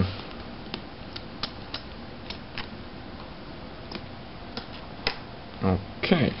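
Light, irregular clicks and ticks of a small screwdriver working the screen-bezel screws of an Asus Eee PC 901 netbook, and of the small screws being handled, about nine scattered over a faint steady background.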